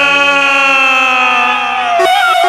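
Male singer holding one long note in a Serbian folk song over sustained electronic keyboard chords, the note sliding slightly down at the end.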